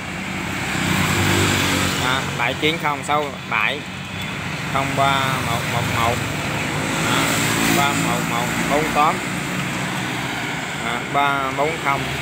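A man speaking in short phrases, with pauses between them, over a steady low hum of road traffic.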